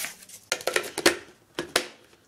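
A quick, irregular series of light clicks and clatters of small hard objects being handled.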